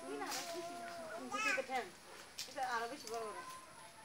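Voices talking and calling out, high-pitched like children's, in several overlapping bursts.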